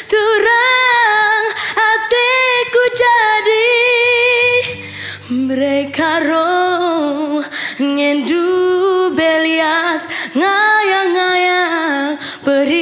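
A girl singing a slow Karo Batak song unaccompanied, holding long notes with a wide vibrato and pausing briefly for breath between phrases. A faint low held tone sounds beneath her voice for a couple of seconds near the middle.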